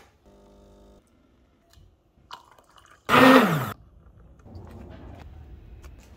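An espresso machine's pump hums briefly near the start as the shot finishes. About three seconds in comes the loudest sound, a short slurp of coffee with a man's sigh that falls in pitch.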